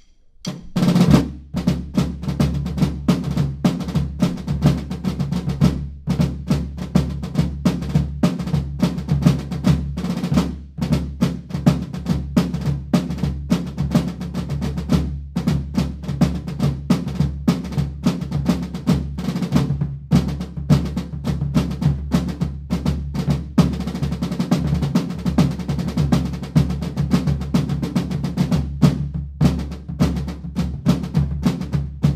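Two rope-tension drums played together in rudimental style, a tall long drum and a field drum, with dense stick strokes and rolls beginning about half a second in.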